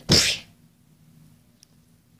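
One short, sharp, breathy burst from a person's voice with a hissing edge, right at the start, followed by faint room hum.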